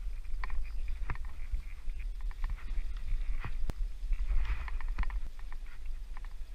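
Boots scuffing and stepping down a rock face during an abseil, with scattered sharp clicks and taps from the rope and climbing gear, over a steady low rumble.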